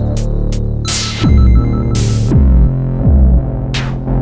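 Electronic music played entirely on a Korg Monologue monophonic analog synthesizer: a steady droning bass line, with synthesized drums made on the same synth. Three kick hits fall sharply in pitch, about a second in, past two seconds and at three seconds, and short hissy hi-hat-like noise hits come in between.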